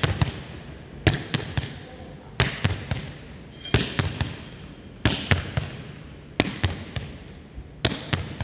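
Volleyball drill against a wall, kept going without a catch: the palm slaps the volleyball and the ball rebounds off the floor and the wall. The sharp smacks come in groups of about three, repeating about every second and a half, and they echo in a large gym.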